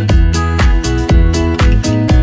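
Upbeat background music with a steady beat and a bass line.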